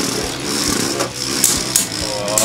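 Two Beyblade Burst spinning tops whirring as they spin and travel around a plastic stadium bowl, with a few sharp clicks in the second half as they make contact.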